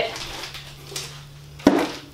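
A plastic-wrapped stack of craft board sheets being handled, then set down with one sharp thump about three quarters of the way in.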